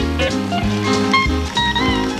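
Swing band playing an instrumental passage with no singing: a stepping bass line, a steady drum beat and a melody line, with one held note bending in pitch near the end.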